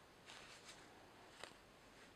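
Near silence, with a few faint rustles of yarn and a tapestry needle being drawn through crocheted fabric, and one faint tick about a second and a half in.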